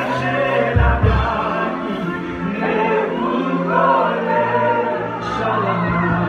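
Live gospel worship music: voices singing together over instrumental accompaniment, with sustained low bass notes that shift a couple of times.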